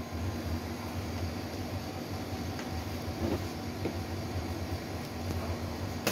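Steady low electric hum of a running room appliance, with a couple of faint taps as a cardboard box is handled a little past halfway.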